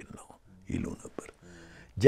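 Soft, quiet speech in a pause of conversation: a few short murmured words and a brief held voiced sound near the end.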